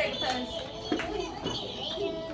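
Young children's voices chattering in a classroom, with two sharp knocks about a second apart.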